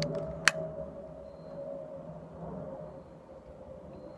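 A lighter clicking once, a sharp click about half a second in, over a low background with a faint steady hum.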